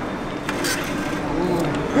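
Metro ticket validator stamping a paper ticket pushed into its slot: one sharp click about half a second in with a short rasp after it, over station background noise and faint voices.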